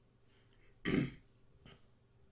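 A man clears his throat once, a short, sharp burst about a second in.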